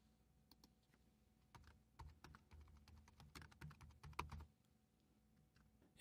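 Faint computer keyboard typing: a run of quick, uneven key clicks as a new entry is typed into the code, stopping about four and a half seconds in.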